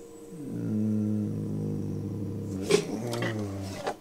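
A man's drawn-out, low hum of thought ("hmmm"), dropping in pitch at the start and then held steady for about three seconds. A single light click of a part being handled comes partway through.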